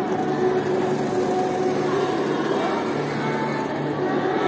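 Indoor exhibition-hall hubbub of indistinct voices, with the steady motor hum of electric sewing machines running that fades briefly in the middle and returns near the end.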